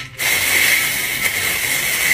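A loud, steady hiss with a thin high tone held inside it. It cuts in sharply just after the start.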